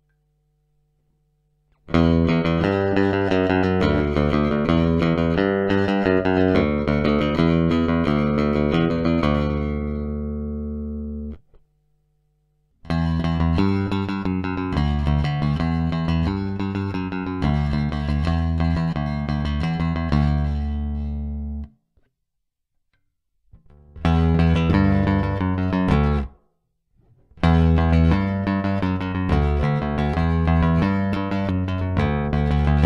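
Electric bass (Fender Geddy Lee Jazz Bass with Rotosound RS66LF strings) played fingerstyle direct into an audio interface, in four passages of notes with short silences between them. The first passage is through the stock Fender single-coil bridge pickup, the middle one through the Seymour Duncan Apollo dual-coil pickups with both on, and the last through the Apollo neck pickup alone.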